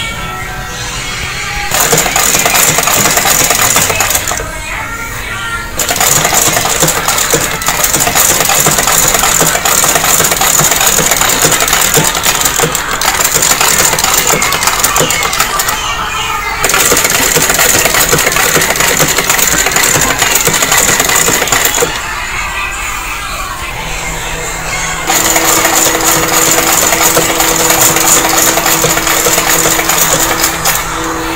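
Vintage black Singer sewing machine stitching, a fast, dense rattle of the needle and mechanism. It stops briefly a few times: about four seconds in, near the middle, and for a few seconds later on, when a steadier hum joins the rattle.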